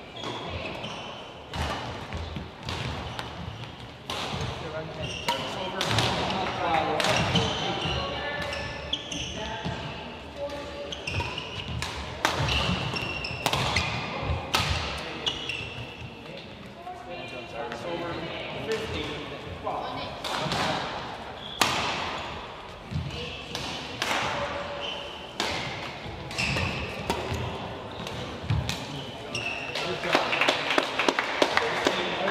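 Badminton play on an indoor court: sharp, irregular cracks of rackets hitting a shuttlecock and the thuds of players' footfalls on the court, over indistinct chatter from people in the hall.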